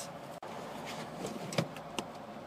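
A few light knocks and rubbing as the rubber and plastic engine air intake duct is handled, over a steady low background hum.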